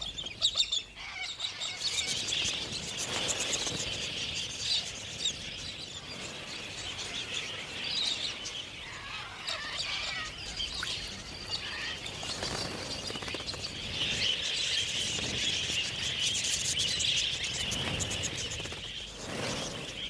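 Budgerigars chattering, a continuous dense twittering of high chirps.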